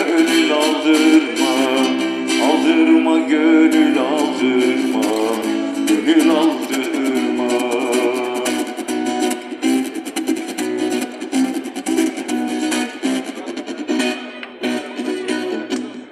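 Amplified acoustic guitar strummed as accompaniment, with an older man's singing voice over it through a small street amplifier.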